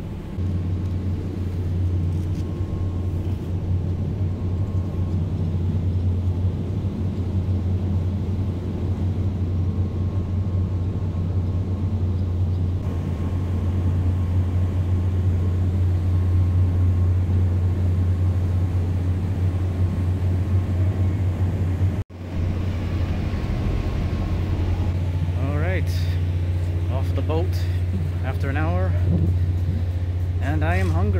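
A steady low drone with one brief dropout about two thirds of the way through. Faint voices come in near the end.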